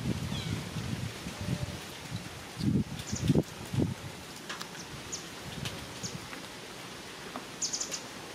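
Outdoor ambience: scattered short, high bird chirps over a low rustle, with a few dull low thumps around three seconds in.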